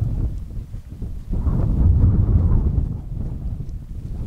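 Wind buffeting the microphone: an uneven, gusting low rumble that swells about a second and a half in and eases off towards the end.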